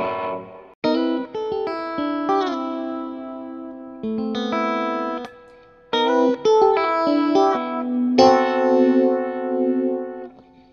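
Electric guitar, a Fender Stratocaster, played through a Blackout Effectors Sibling analog OTA phaser. There are two short phrases of picked chords and notes, one starting about a second in and another about six seconds in. The held notes waver with the phaser's sweep.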